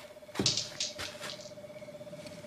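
A few quick footsteps scuffing on pavement about half a second in, then fainter steps, over a faint steady hum.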